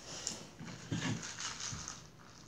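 Close-miked mouth sounds of drinking water from a plastic cup: a run of short wet sips and gulps, loudest about halfway through.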